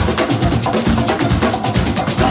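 Live band playing an up-tempo groove, with drum kit and hand percussion driving a steady beat of about four strikes a second over bass and keyboard.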